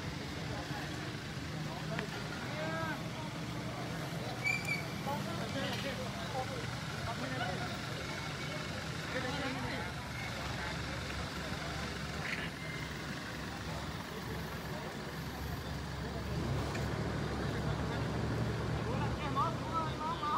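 Motor vehicle engines running at a road junction, getting louder over the last few seconds, with faint indistinct voices in the background.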